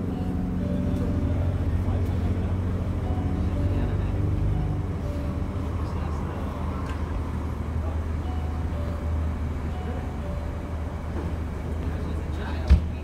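Steady low rumble of idling emergency vehicles, a fire engine among them, with faint talk from people nearby.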